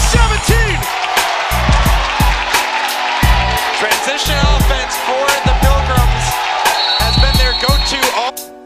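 Background music with a steady beat and deep bass, with a vocal line over it.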